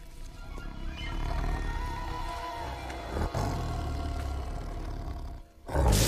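Tense orchestral film score with sustained tones swelling, then a brief drop before a sudden loud roar from a cartoon sabre-toothed cat as it charges, at the very end.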